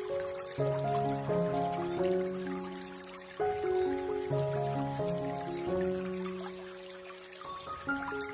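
Slow, soft piano music, chords and single notes struck every second or so and left to ring, over a faint trickle of running water.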